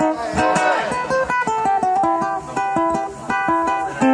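Guitar playing an instrumental passage between sung lines: a quick run of separately picked notes.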